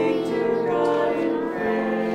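Small church choir of women's voices with a boy singing together, holding long sustained notes.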